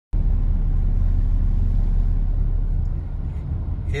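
Steady low rumble of a moving car heard from inside the cabin: road and engine noise while driving on a highway. A voice begins just at the end.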